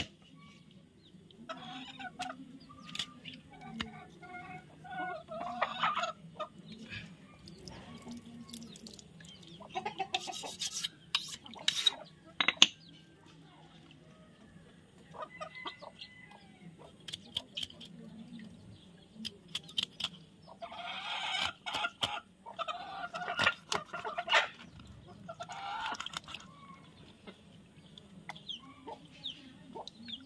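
Chickens clucking and calling in bursts, in the first few seconds and again from about twenty to twenty-six seconds in. A few sharp knocks of a knife chopping through the fish onto a wooden stump come about ten to thirteen seconds in.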